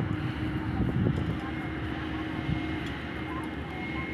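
Crawler crane's diesel engine running with a steady hum while it holds a suspended precast concrete bridge girder, with workers' voices mixed in.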